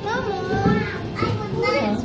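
A young child's high-pitched voice calling out in gliding, sing-song exclamations, with other voices underneath.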